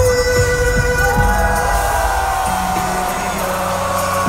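Live concert music over a venue's sound system, recorded from within the crowd: held synth notes over a bass line, with the drum hits falling away about halfway through.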